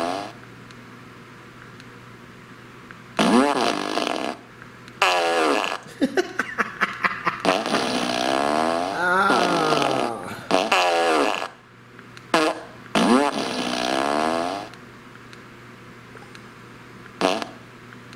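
T.J. Wisemen Remote Controlled Fart Machine No. 2 playing a series of recorded fart sounds through its speaker, about eight of them with short gaps between. Most are drawn out and waver in pitch, one is a rapid sputter, and the last is brief.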